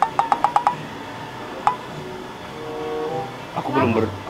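A quick run of about seven sharp, ringing clicks in the first second, then a single click a second later, followed by faint background music.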